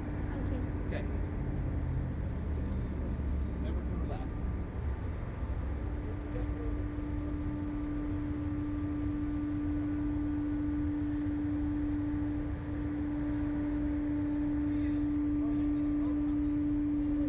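Slingshot ride's machinery running before launch: a steady low hum with a steady motor tone that comes in about six seconds in, holds, and grows slightly louder near the end.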